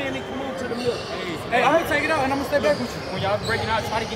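Indistinct talking among players in a huddle, with basketballs bouncing on a hardwood gym floor now and then in the background, in a large echoing hall.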